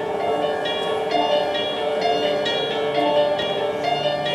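Theatre pit band playing slow, sustained chords that shift every half second or so: the musical underscoring at the opening of the number.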